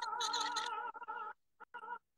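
Operatic soprano holding a high sung note with a wide vibrato over a backing track. About a second and a half in, the sound breaks up and cuts out in abrupt gaps, a sign of the faltering live-stream connection.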